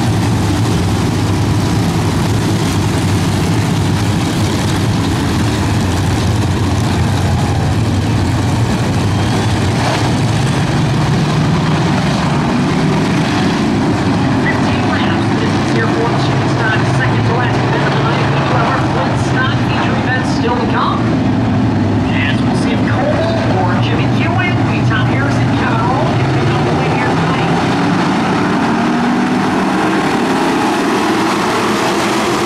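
A pack of dirt-track street stock race cars under race power, their engines making a loud, steady, blended drone as the field circulates.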